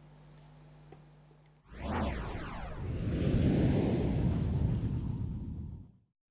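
Broadcast title sting: after a second and a half of faint studio hum, a sweeping whoosh sets in, followed by a deep noisy swell that builds and then cuts off abruptly.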